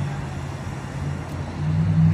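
Road traffic: a vehicle engine's low, steady hum fades away at the start and comes back near the end, over a steady rushing background.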